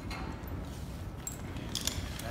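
Carabiners and metal rope-access hardware on a harness clinking lightly as the climber shifts his weight, with a couple of sharper clinks near the end, over a low steady room rumble.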